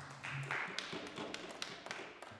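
Scattered light taps and clicks at irregular spacing, with a brief rustle in the first half-second.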